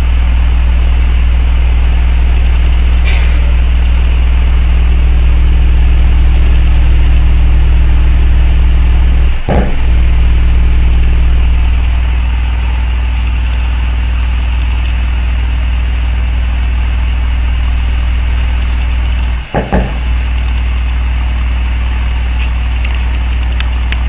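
Ground Zero Radioactive GZRW 30SPL 12-inch subwoofer playing loud, deep, steady bass, its cone pumping far in and out. The bass cuts out for a moment twice, about nine and a half and about nineteen and a half seconds in.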